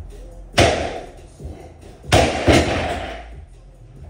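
Heavy thuds, one about half a second in and a double one about a second and a half later, each ringing out briefly, over background music.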